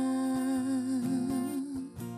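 A woman sings one long held note with vibrato toward its end, over a strummed acoustic guitar. The note stops just before the end, leaving the guitar strumming on its own.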